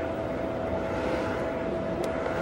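Steady hum and hiss with a thin, even whine from a running LED spot moving-head light.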